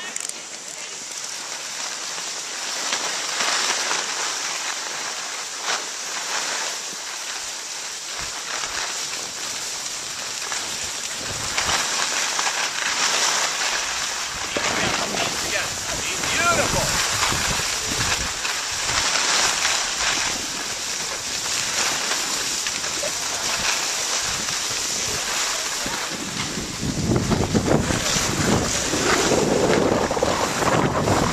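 Skis sliding and scraping over packed snow, a steady hiss with uneven rasps, and wind buffeting the microphone, heavier near the end.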